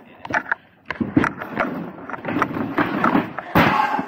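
Wooden pallets being handled and shifted by hand: a run of hollow wooden knocks and clatters, with a louder scraping clatter about three and a half seconds in.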